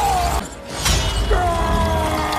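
Movie action soundtrack: a man's pained cry fading out, then about a second in a sudden crash of shattering glass, followed by a long steady held tone.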